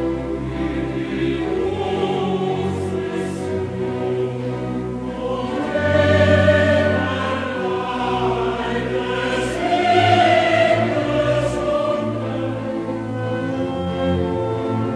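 Choir and orchestra performing a classical cantata, with sustained sung lines over the orchestra that swell louder about six seconds in and again about ten seconds in.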